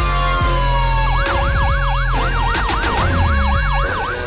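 Closing theme music with a steady bass beat, overlaid with an emergency-vehicle siren effect: a falling tone in the first second, then a fast up-and-down yelping wail, about four sweeps a second.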